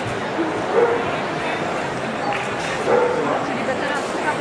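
A dog barks twice, briefly, about a second in and again around three seconds in, over steady crowd chatter.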